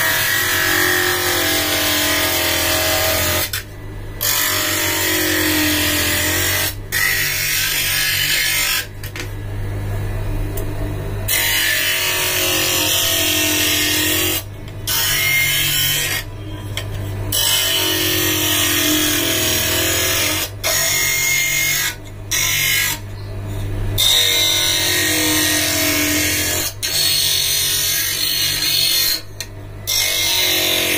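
Motorised optical lens cutter running with a steady hum while its upright blade cuts a plastic blue-cut spectacle lens to the traced frame shape. The high cutting noise breaks off sharply about ten times and starts again.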